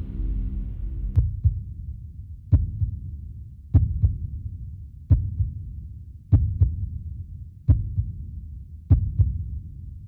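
Heartbeat sound effect in a film score: deep thumps, often paired like a lub-dub, about every one and a quarter seconds over a low rumble, building suspense.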